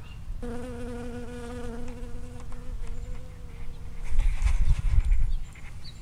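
Honeybee buzzing in flight close to the microphone: a steady hum that starts about half a second in and fades out by about three seconds. A louder low rumble follows near the end.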